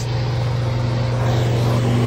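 Natural gas generator engine running steadily, a low, even drone with no change in speed.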